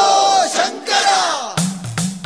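Soundtrack of a dense cry from many voices, their pitches sliding downward like a crowd's battle cry. About a second and a half in, drum-led music with a steady beat starts.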